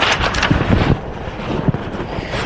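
Rustling, blowing noise on a microphone, loudest in the first second and then settling lower.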